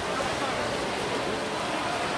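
Steady noise of a large pool hall during a swim race: swimmers splashing under scattered spectator voices, all echoing.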